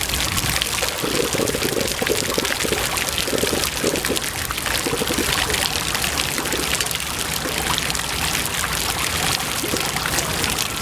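Plaza water feature: thin fountain jets spurting up and splashing back onto wet stone paving, a steady spatter and trickle of water, with a few fuller splashes in the first half.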